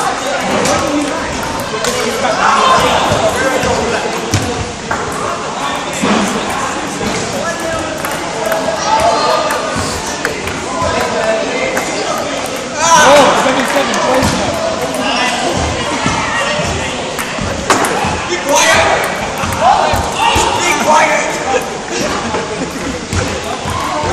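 Table tennis balls knocking on tables and bats in short rallies across several tables, with boys' voices talking throughout.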